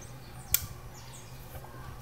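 A single sharp click about half a second in, over a steady low hum of room noise.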